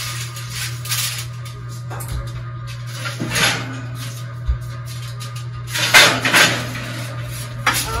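Aluminium foil crinkling and a metal baking tray clattering and scraping as it is handled at an oven, with the loudest clanks about six seconds in, over a steady low hum.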